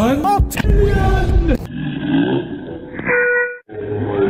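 Heavily processed, distorted voice sounds that glide up and down in pitch in second-long bursts. A short steady electronic tone comes about three seconds in.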